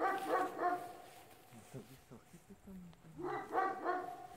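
Dog barking: a quick run of about three barks at the start and another run of about three near the end.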